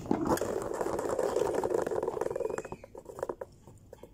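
Plastic salad spinner's basket spinning off balance, a loud fast rattle that dies down about three seconds in to a few scattered clicks as it slows.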